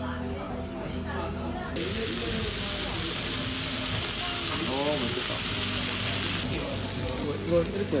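Sliced bone-in steak sizzling on a hot black skillet: a steady hiss that starts suddenly about two seconds in and cuts off suddenly past the six-second mark, over background music.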